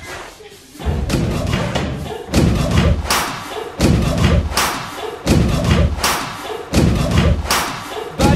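Heavy thumps repeating at a steady beat, about one every second and a half, each with a bright crack on top.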